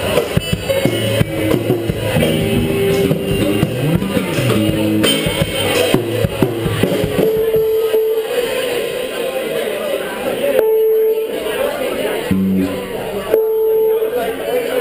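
Live band playing electric guitar, keyboard and drum kit. After about seven seconds the playing thins out to sparse held notes.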